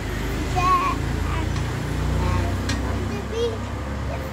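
A young girl's voice in a few short, wavering sung or called-out snatches, over a steady low rumble.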